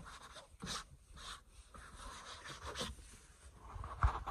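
Faint handling noise: brief soft rustles and scrapes as a phone is moved about and a finger rubs a dew-wet tabletop.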